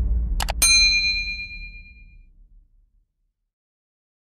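Subscribe-button sound effect: a quick double mouse click, then a notification-bell ding that rings out and fades over about a second and a half, over a low rumble dying away.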